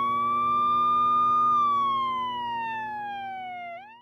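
Cartoon whistle sound effect: a single whistling tone that has just swooped up, holds for about a second and a half, then slides slowly down in pitch and flicks sharply upward at the very end.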